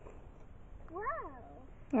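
A small child's short wordless vocal sound about a second in, rising and then falling in pitch, over a faint steady hiss.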